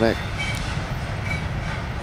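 Double-stack container cars of a freight train rolling through a curve: a steady low rumble with two faint, short high squeals from the wheels.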